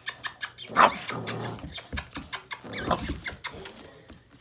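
Boxer puppy at play giving short high-pitched squeaks and yelps, mixed with scuffling and clicking; the loudest cry comes about a second in, another just before three seconds.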